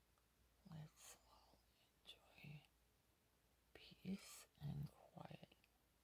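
A person's voice speaking softly, almost whispering, in three short phrases; the words are too faint to make out.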